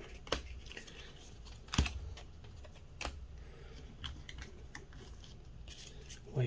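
Magic: The Gathering trading cards being handled and set down on a playmat: a few scattered clicks and taps, the sharpest about two seconds in, with quieter ticks later.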